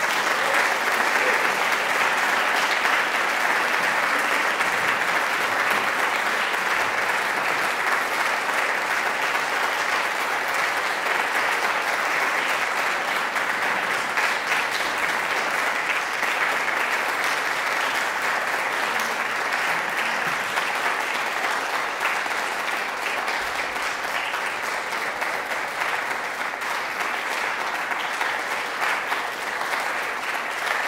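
Audience applauding steadily, a dense patter of many hands clapping in a hall, easing slightly toward the end.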